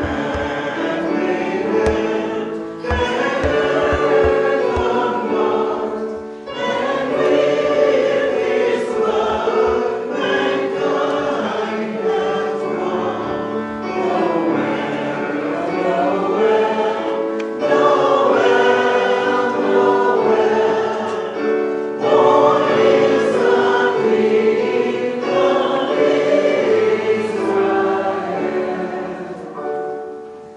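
Congregation singing a hymn together in long, held phrases, dying away near the end.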